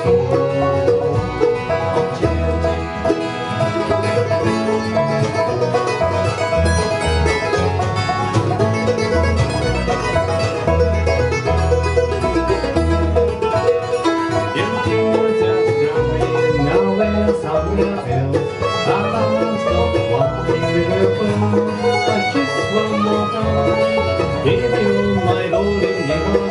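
Bluegrass band playing an instrumental break between verses: banjo, mandolin, fiddle and acoustic guitar over an upright bass, with no singing.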